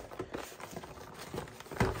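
Cardboard Pokémon premium collection box being handled and moved, with soft scattered knocks and rustles and a firmer knock near the end.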